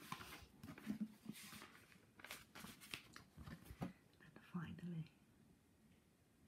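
Book pages being turned and handled, the paper rustling several times in quick succession, with a soft low voice now and then in between.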